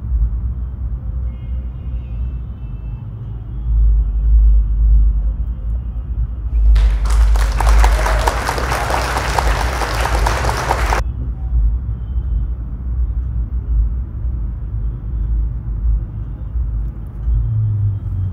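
Steady low background rumble, with a burst of loud hissing noise that starts and stops abruptly, lasting about four seconds partway through.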